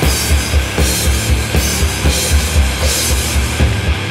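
Instrumental section of a heavy, distorted stoner rock song: full band with a busy drum kit playing rapid kick-drum hits under cymbals.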